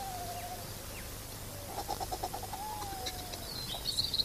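Recorded bird song: a faint whistled note gliding slightly downward, ending about half a second in, and a second one starting about two and a half seconds in. Between them comes a quick run of clicking chirps, and a high trill comes near the end.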